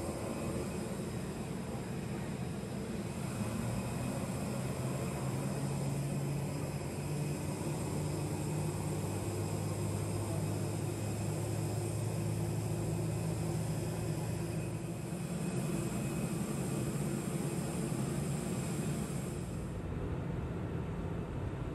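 Jet airliner noise: a steady, even hiss over a low hum, the hum somewhat stronger through the middle.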